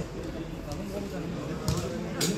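Players' voices calling out across a small-sided football pitch, with a sharp knock near the end, like a ball being kicked.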